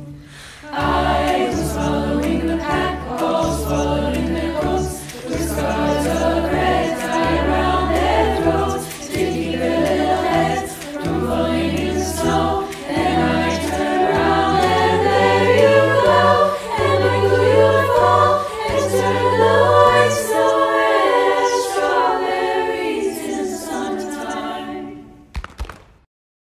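A virtual choir of many young voices singing together in chords, a cappella style, over a low held bass line that drops out about three-quarters of the way through. The singing fades out just before the end.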